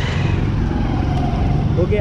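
Motorcycle engine running at low revs, a steady low rumble.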